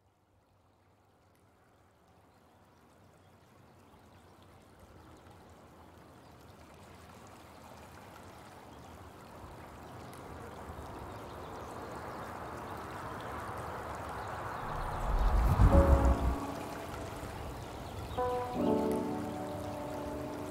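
Rushing stream water fading in from silence and growing steadily louder. About fifteen seconds in there is a deep bass boom, and near the end lofi music notes come in over the water.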